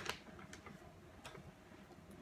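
Paper page of a book being turned: the rustle of the page fades out right at the start, followed by a few faint, light ticks as the paper is handled.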